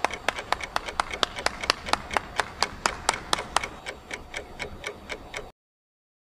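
One person clapping hands in a steady, even run of about four claps a second, which stops abruptly about five and a half seconds in.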